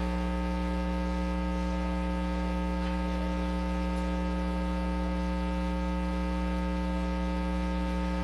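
Steady electrical mains hum: a constant low buzz with many evenly spaced overtones, unchanging throughout.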